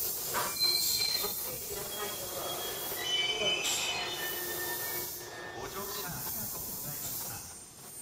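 Tobu 100 series Spacia electric train creeping in to stop at a platform, its wheels squealing in several high-pitched squeals that come and go over a steady hiss.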